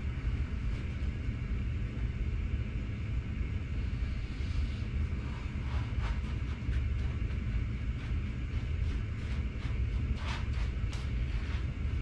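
Steady low rumble, with faint scattered rubbing and ticking as a microfiber cloth is wiped over an alloy wheel and its tyre.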